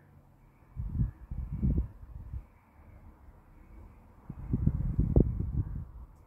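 Low, irregular rumbling noise on the microphone in two spells, one near the start and a louder one near the end.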